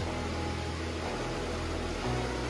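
Steady rushing of a mountain creek running over rocks, an even noise with no breaks.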